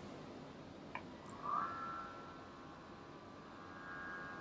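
Master Height electronic height gage's motor driving the probe carriage up the column: a light click about a second in, then a faint, steady motor whine that starts with a short rise in pitch.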